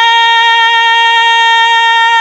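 A woman's solo voice holding one long sung note into a microphone, the pitch steady and unwavering.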